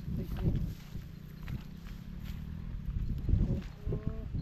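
Bare feet stepping through flattened dry rice straw and stubble, a rustle with each step about once a second, over a steady low rumble.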